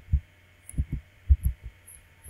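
Typing on a computer keyboard: a quick series of short, dull thumps, about seven in two seconds, with a few faint clicks.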